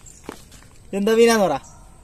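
A single drawn-out vocal call from a person's voice, rising and then falling in pitch, without clear words.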